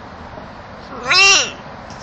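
Macaw giving one short call about a second in, its pitch rising and then falling.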